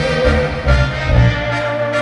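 Live band playing música calentana dance music: a held melody line over a steady bass beat.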